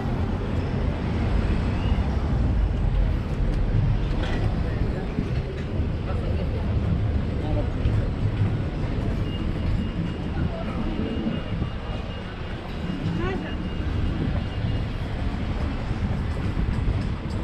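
Busy city street ambience: road traffic running steadily with passers-by talking in the background. A thin steady high tone runs for several seconds in the second half.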